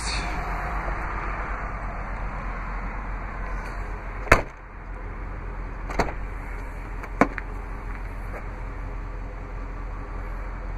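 A sharp latch click about four seconds in, then two lighter clicks a couple of seconds apart from the handle and latch as the rear liftgate of a Jeep Grand Cherokee is released and swung open. A steady rushing background runs underneath, easing after the first click.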